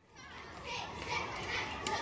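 Schoolyard ambience of many children playing and chattering, fading up from silence at the start.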